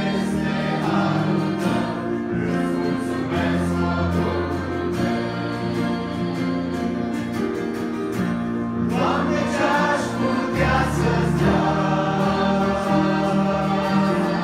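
Mixed church choir singing a hymn together, accompanied by acoustic guitar, with low held bass notes beneath the voices.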